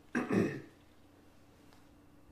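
A man clearing his throat, a short two-part rasp in the first second, followed by quiet room tone.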